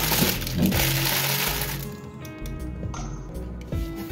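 Baking paper rustling and crinkling as it is pulled open by hand, lasting about two seconds, over steady background music that carries on alone for the rest.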